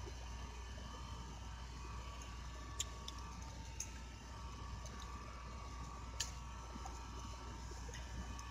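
Quiet room tone, a steady faint hum and hiss, with a few soft, scattered computer-keyboard key clicks.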